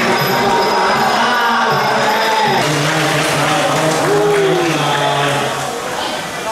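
Live Muay Thai ring music: a wavering, gliding reed-pipe melody over a steady low drone and drums, with crowd noise under it.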